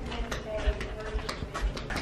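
Footsteps on a hard floor while walking with a handheld camera: a string of irregular soft steps and knocks, with handling thuds on the camera.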